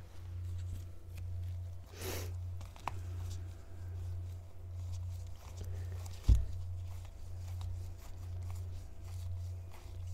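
Tarot cards being handled and looked through by hand: a soft rustle about two seconds in, a small click, and a dull thump about six seconds in. A steady low hum runs underneath.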